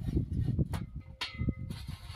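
Square steel tubing being handled on a steel pipe-cutting stand: irregular knocks and rattles of metal on metal, with a few sharper clanks, about a second in and a little after, that leave a brief metallic ring.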